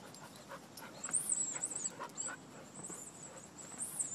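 A bearded collie panting faintly as it runs on grass, with thin high chirping in the background, clearest about a second in and near the end.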